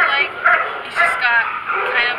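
A dog yipping and whining: a run of short, high cries, with one longer whine falling in pitch a little past halfway.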